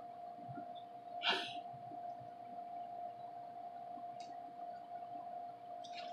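A person eating quietly, with one short, sharp breathy sound through the nose about a second in, over a faint steady hum.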